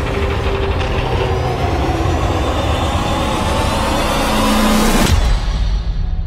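Trailer sound design: a dense mechanical whine climbing in pitch over a deep rumble, swelling for about five seconds. It ends in a sudden hit and cut-off, leaving only a low rumble.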